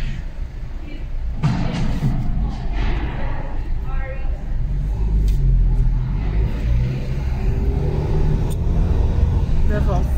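A car's engine and tyres make a low, steady rumble, heard from inside the cabin as it drives slowly.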